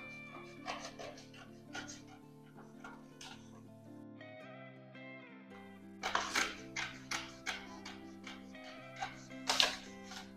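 Scissors snipping through a paper pattern, a series of short cuts from about six seconds in, over soft background music.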